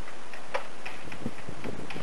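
A few light, irregularly spaced clicks and taps over a steady background hiss.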